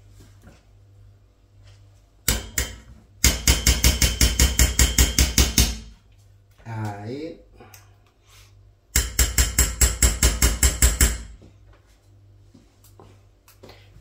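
A spoon scraping sticky honey out of a glass cup over a small saucepan: two runs of quick, even strokes, about six a second, each lasting two to three seconds. A short vocal sound falls between them.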